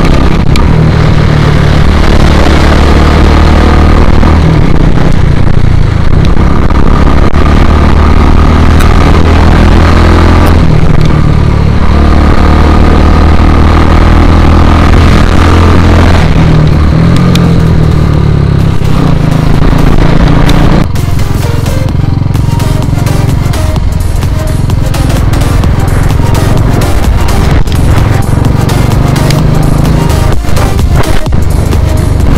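Royal Enfield Classic 350 single-cylinder engine with an aftermarket exhaust running under way, its note rising and falling with the throttle. About two-thirds of the way through, music with a steady electronic beat takes over, with the motorcycle still faintly beneath it.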